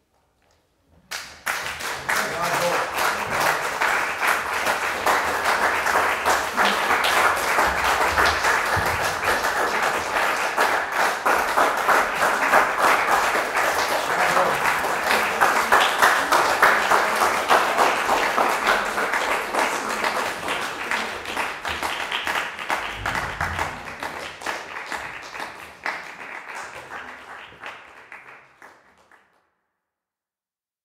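Audience applauding: the applause starts suddenly about a second in, holds steady, and fades out near the end.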